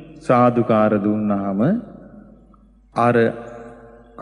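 A Buddhist monk's voice preaching in a drawn-out, chant-like delivery: a long phrase ending on a held syllable, then a short phrase about three seconds in.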